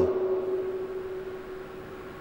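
A single steady tone lingers after the voice stops and fades slowly over the two seconds, over faint room noise: the lecture microphone and sound system ringing on.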